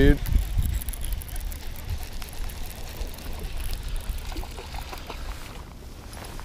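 Wind rumbling on the microphone while a baitcasting reel is cranked to bring in a hooked bass, with a few faint ticks from the reel.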